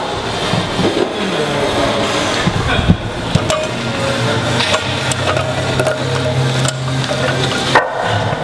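Iron weight plates on a loaded barbell clanking, several sharp metal knocks with the loudest about three seconds in. Low bass notes of background music sound underneath through the second half.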